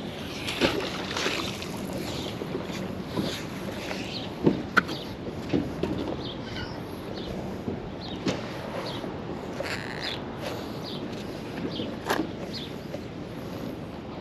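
Gloved hands handling and hauling in a magnet-fishing rope, with scattered short rustles and knocks over a steady outdoor noise.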